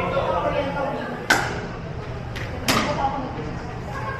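Pickleball paddles hitting a plastic ball in a rally: two sharp pops about a second and a half apart, with a fainter tap just before the second one. Each pop echoes briefly in the indoor court.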